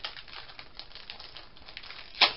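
Clear plastic packaging bag crinkling as it is handled, a steady run of small crackles.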